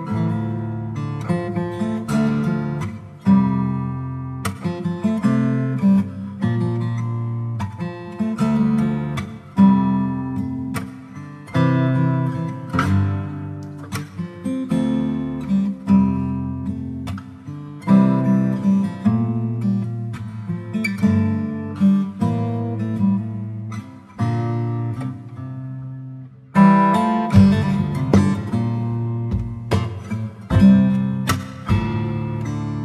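Instrumental background music on acoustic guitar, strummed and picked chords with ringing notes.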